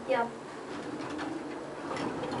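Faint, steady running sound inside a traction elevator car, with the car doors beginning to slide open near the end.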